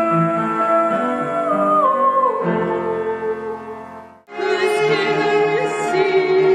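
Live female voice singing with piano accompaniment: a held sung note slides down in pitch about two seconds in. The music fades out just after four seconds in and a new passage starts at once with a long sustained note.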